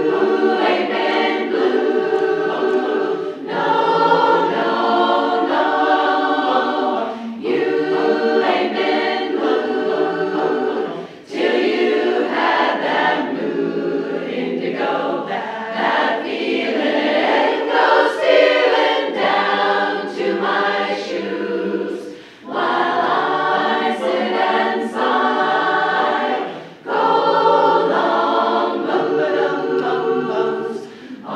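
Women's barbershop chorus singing a cappella in close harmony, holding sustained chords in phrases with brief breaks for breath between them.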